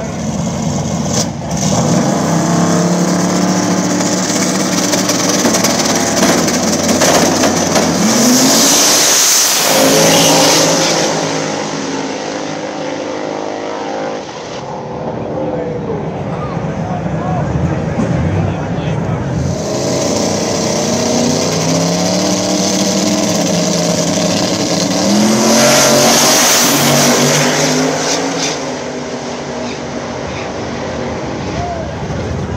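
Drag race cars running hard at high revs, with two loud launches down the strip, the first about eight seconds in and the second near the end, each with rising engine pitch and a hiss of tire noise.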